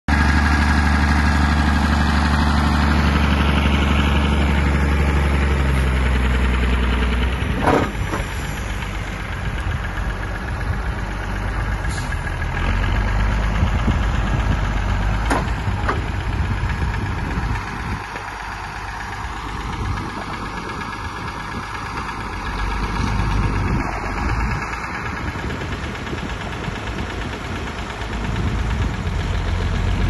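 CBT farm tractor's diesel engine running under load as its front loader carries a large log: a steady, loud low drone for the first several seconds, then a rougher, uneven run with a few sharp knocks.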